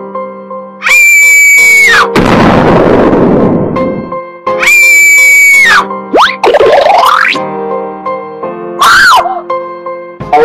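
Cartoon background music with sound effects laid over it: two loud, high, held squeals of about a second each, each dropping away at its end, the first followed by a rushing hiss. Then come quick swooping up-and-down glides and a short falling tone near the end.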